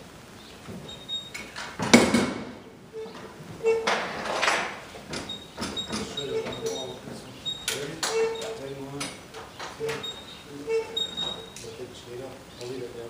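Knocks, thumps and clatter of things being moved about inside a box truck's cargo area, with the loudest bang about two seconds in and a longer scraping rush around four and a half seconds.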